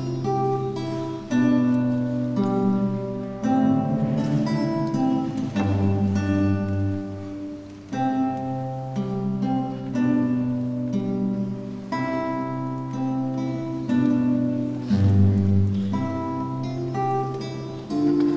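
Classical nylon-string guitar played fingerstyle as a solo: a melody of plucked notes over held bass notes.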